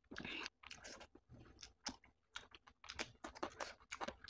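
Close-up eating sounds: wet chewing and crunching of spicy chicken-feet curry, with fingers squelching through curry-soaked rice. A brief noisy rustle opens it, then comes an irregular run of short, sharp smacks and crunches.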